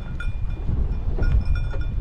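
Low, steady rumble of a vehicle driving slowly over a rough dirt track, with a livestock bell ringing faintly just at the start.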